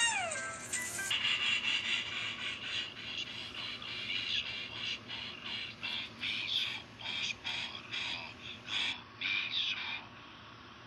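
Cartoon film soundtrack heard through a tablet's speaker: orchestral music with a steady rhythmic pulse, under the little steam engine's chugging climb. A pitched gliding sound, rising then falling, comes right at the start, and the sound changes abruptly about a second in.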